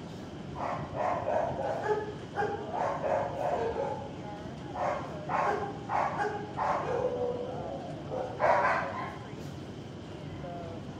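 Dogs barking and yipping in a shelter kennel block: a run of short barks, the loudest about eight and a half seconds in.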